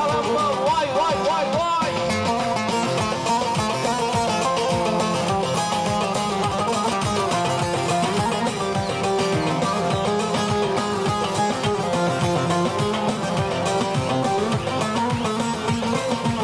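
Live wedding band playing an instrumental Turkish dance tune (oyun havası): a plucked-string lead melody, wavering in the opening seconds, over a steady driving beat.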